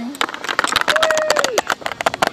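Dense, rapid crackling and scuffing of furry fursuit paws rubbing against the microphone, with a short held voice tone about a second in that falls away at its end.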